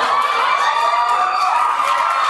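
Crowd of schoolchildren cheering and shouting, with high, drawn-out shrieks.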